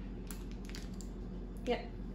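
Faint crinkling of a plastic-wrapped bread package being turned over in the hands, over a steady low hum; a short spoken "yep" comes near the end.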